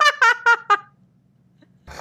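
A woman laughing out loud: four quick, high-pitched bursts of laughter in the first second.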